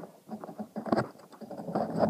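Close handling noise: irregular clicks, taps and rustling scrapes of fingers and small parts right against the phone's microphone, with a sharper click about a second in.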